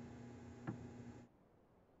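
Very quiet room tone with a faint steady hum and one light click about two-thirds of a second in; the sound then drops away to silence.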